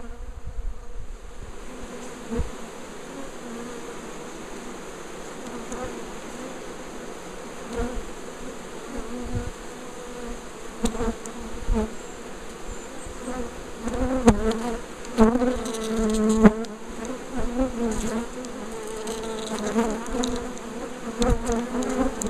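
A swarm of honeybees buzzing as it moves into a hive, a dense hum of many wings that wavers in pitch and swells louder in the second half. A few short knocks sound among it.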